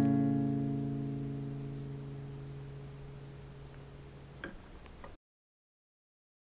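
Acoustic guitar chord of root and major third ringing out and slowly fading, with a faint click from the strings about four and a half seconds in. The sound cuts off abruptly near the end.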